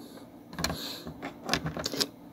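Light clicks and rattles of plastic action figures being handled: one click a little over half a second in, then a quick run of clicks near the end.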